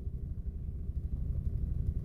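Steady low rumble inside a car cabin, the hum of a stationary car with its engine running.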